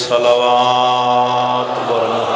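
A man's voice holding one long, steady chanted note through a microphone and loudspeaker as he draws out the end of a prayer; it breaks off near the end.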